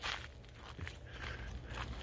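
Faint footsteps on a path of wood-chip mulch thinly covered in snow, light crunching steps.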